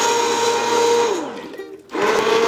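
Immersion blender motor running in a stainless steel pot of chunky roasted tomato and red pepper soup, a steady whine that sags and stops about a second and a half in, then starts again at the very end.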